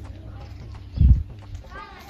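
A dull low thump about a second in, then a faint high voice near the end, likely a child's.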